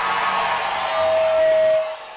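A very large crowd cheering and whooping. A single steady tone is held for almost a second near the middle, and the noise drops sharply just before the end.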